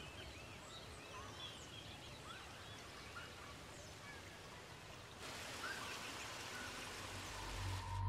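Faint chirping of many small birds over a soft background hiss; about five seconds in, the hiss gets louder while a few chirps carry on.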